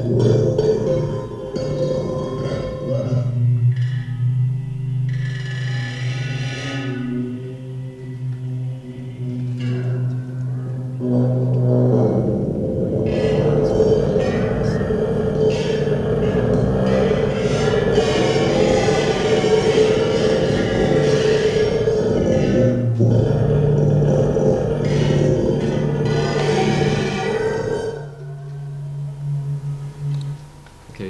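Electronic vibrators buzzing against metal salad bowls in a free-improvisation piece: a steady low buzzing drone with ringing metallic overtones. About twelve seconds in it thickens into a louder, dense rattling texture, then thins back to the drone near the end. Heard as a recording played over a hall's loudspeakers.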